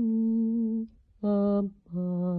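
A woman's voice singing a slow Burmese melody unaccompanied, in long held notes. A held note ends just under a second in, a short note follows, and a new note with a gentle vibrato starts near the end.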